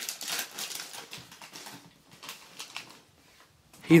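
Plastic sausage packaging crinkling and rustling as it is pulled open by hand, dying away after about two seconds.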